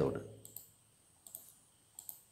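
Two light computer mouse clicks, about three-quarters of a second apart, advancing the presentation slides.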